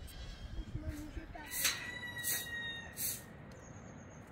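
Large hand shears snipping through a sheep's fleece: three crisp cuts about two-thirds of a second apart.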